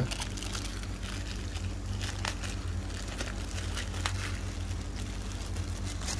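Clear plastic bag crinkling as hands unwrap a model's metal display stand, with a couple of sharper crackles.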